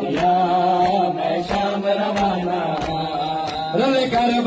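A man chanting a Saraiki noha (lament) through a portable loudspeaker, holding long notes, over the regular strikes of mourners beating their chests in matam.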